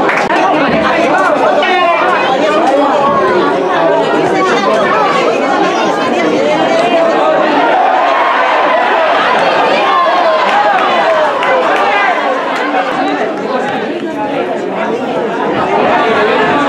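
Many voices of football spectators talking and calling out over one another, with no single speaker standing out.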